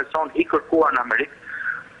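A man speaking Albanian over a telephone line, his voice thin and cut off in the highs, with a short drawn-out hesitation sound midway.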